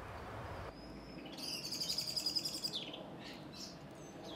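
A small songbird singing a fast trill of rapidly repeated high notes for about a second and a half, followed by a couple of short chirps.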